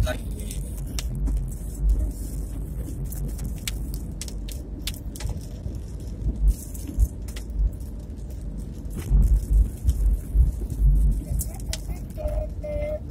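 Wind and road rumble on a microphone riding along on a moving vehicle. Heavier gusts of wind buffet the microphone about six and a half seconds in and several times near the end, with scattered clicks throughout.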